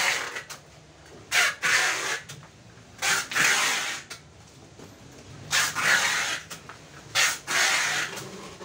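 Packing tape pulled off a roll and pressed onto a cardboard box: a series of rasping screeches, each under a second long, about five across eight seconds with short pauses between them.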